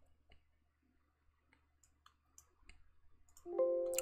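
Faint computer mouse clicks, scattered and irregular, as items are selected and double-clicked in an editing program. Near the end comes a short, louder steady tone made of several pitches.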